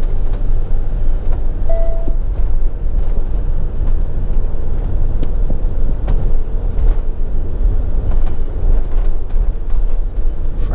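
Motorhome driving along a town road, its engine and tyre noise heard from inside the cab as a steady low rumble. A short single beep sounds about two seconds in.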